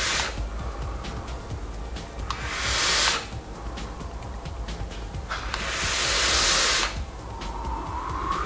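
A person exhaling vapor from a mesh-coil rebuildable tank vape set at 40 watts, in two long breathy rushes: one about two and a half seconds in and a longer one from about five and a half to seven seconds.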